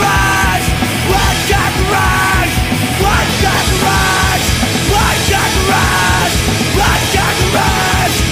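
Loud, dense punk-style rock from a band, with yelled vocals over distorted guitars, bass and drums. Short shouted phrases come back about once a second.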